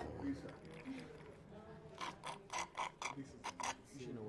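Casino chips being handled at a blackjack table: a quick run of small, sharp clicks in the second half, over low voices.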